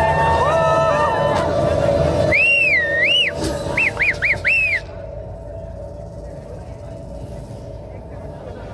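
Background music fades out about two seconds in. A high whistling tone follows, sweeping up and down in several glides, the last few short and quick, and stops abruptly about five seconds in. A quiet steady hum is left.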